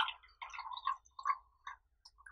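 Tea being poured in a thin stream from a tall glass brewing vessel into a glass cup. The splash is strongest at the start, then breaks into short, uneven gurgling splashes as the stream tapers off.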